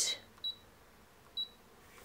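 Brother ScanNCut cutting machine's touchscreen beeping as its minus key is tapped with a stylus: two short high beeps about a second apart. Each beep confirms a press that steps the design's size down.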